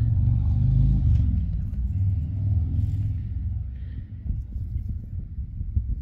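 Low, uneven rumble, strongest in the first few seconds and easing off after about four seconds.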